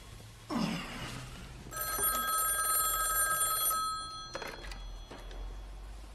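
Telephone bell ringing once for about two seconds, with a brief noise about half a second in and a sharp click afterwards.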